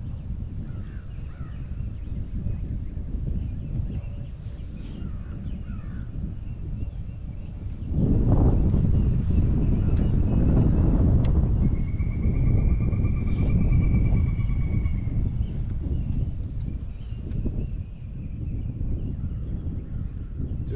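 Wind buffeting the microphone, growing much heavier about eight seconds in and easing near the end, with a bird calling over the water, including one pulsed call lasting a few seconds near the middle.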